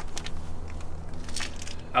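Shoes scuffing on gritty asphalt and light handling clicks as the person crouches low beside the truck, over a steady low hum, with a brief gritty scrape near the end.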